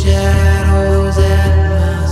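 Music: an instrumental passage of a roots song, sustained drone-like chords held over a pulsing low beat.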